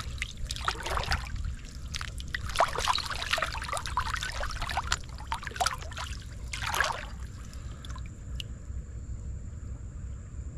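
Gloved hand splashing and scooping in shallow creek water, stirring up gravel and silt from the bottom in a run of irregular sloshes. The splashing dies away about seven seconds in, leaving only the creek's gentle trickle.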